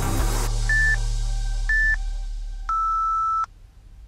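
Workout interval-timer beeps: two short high beeps about a second apart, then one longer, lower beep. They mark the end of the exercise interval and the start of rest. Backing music stops just as the beeps begin.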